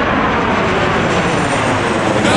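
Twin-engine jet airliner passing low overhead, its engine noise loud and steady.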